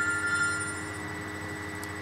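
Mobile phone ringing: a steady electronic ring tone, one of its higher notes dropping out about halfway through.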